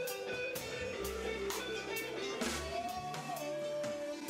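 Live band playing: electric bass holding low notes under a drum kit keeping a steady beat with cymbals, and electric guitar.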